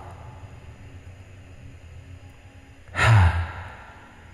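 A man sighs once about three seconds in, a breathy 'hah' that falls in pitch and fades, over a faint steady background hum.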